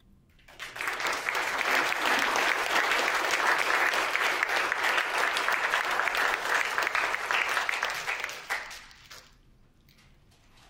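Audience applauding, starting about half a second in, holding steady, then dying away near the end.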